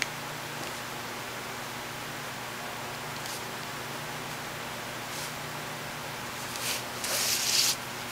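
Steady background hiss with a few brief scratches of a gel pen drawing on paper, then near the end a longer, louder rustle of the paper pennant being slid and turned on the table.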